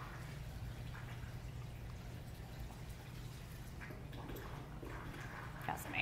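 Mixed saltwater pouring from a refill hose onto a rock at the surface of a reef aquarium, a faint steady splashing over a low hum, with a few small ticks near the end.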